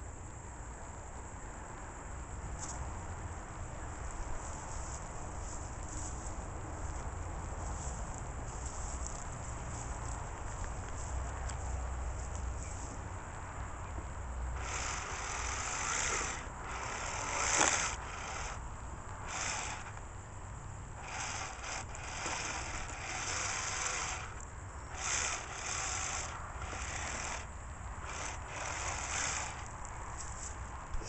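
A steady low rumble, then from about halfway a run of irregular rustles and scrapes, the loudest a little past the middle.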